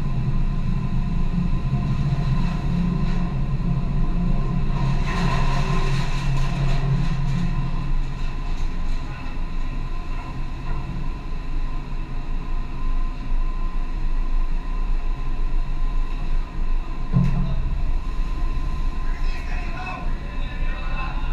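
Steady low rumble of a ship under way at sea, with wind and rushing water, and a louder low drone through the first eight seconds or so while a slung cargo load comes across on the replenishment rig. Faint voices come in near the end.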